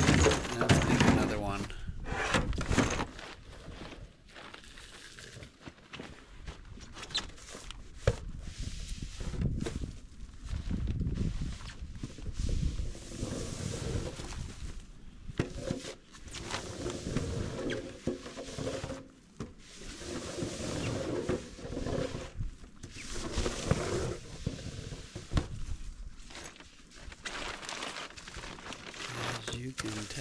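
Snow shovels scraping and chunks of heavy, wet snow knocking into a plastic jet sled, with a plastic tarp rustling, in an irregular run of scrapes and thuds. People talk briefly at the start.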